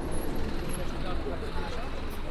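Street ambience: a steady low rumble of road traffic, with indistinct chatter of passers-by.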